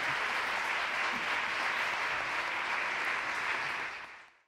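Audience in a lecture hall applauding steadily at the close of a talk, fading out at the very end.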